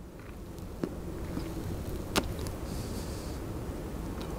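A man draws on a cigar and blows out the smoke, very quietly, over a steady low rumble like distant traffic. There is one soft click about two seconds in and a brief soft hiss a little before three seconds.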